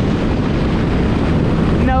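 Steady rush of wind on the microphone and churning water while being towed at speed behind a motorboat.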